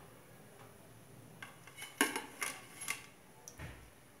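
A metal utensil clinking and tapping against the pan and a ceramic plate as fried sev is lifted out of the oil and set down: a handful of sharp clinks in the second half, the loudest about two seconds in.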